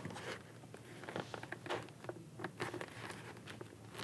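Faint rustling and scraping of a fabric-and-foam motorcycle helmet comfort liner being pressed back into the helmet shell by hand, with a few light clicks and taps along the way.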